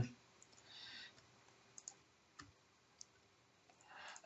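Near silence with a handful of faint, scattered clicks from computer keyboard keys as numbers are typed in.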